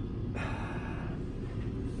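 Soft breathing close by, over a steady low hum.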